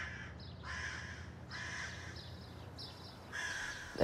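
Faint bird calls in the background, a short harsh call about once a second, over a low steady hum.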